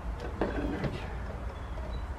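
A few faint clicks of pliers and wires against the plastic case of a sealed lead-acid battery as the wires are worked loose, over a steady low rumble.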